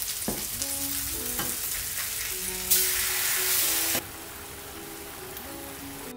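Tofu patties sizzling in hot oil in a non-stick frying pan, with a few light clicks. The sizzle grows louder for about a second past the middle, then drops off sharply.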